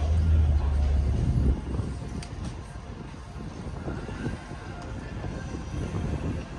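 Lifted square-body pickup's engine: a loud, deep rumble for about the first second and a half, then dropping to a lower, uneven rumble.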